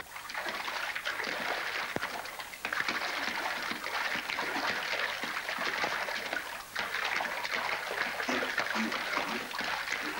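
River water splashing and churning continuously as two men wrestle waist-deep in it, with short lulls about two and a half and nearly seven seconds in.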